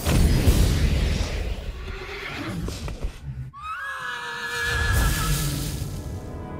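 Film soundtrack: a loud rushing swoosh with a low rumble at the start, then after a brief hush about halfway through, a long horse-like whinny with music beneath it.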